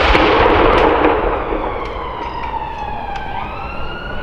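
A 105 mm light gun fires a blank salute round right at the start, its boom rolling and echoing away over the next couple of seconds. A siren wails in the background, its pitch sinking slowly and then rising again near the end.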